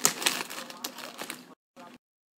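A thin plastic bag of paintbrushes being handled and crinkling: a quick flurry of small crackles that stops about one and a half seconds in.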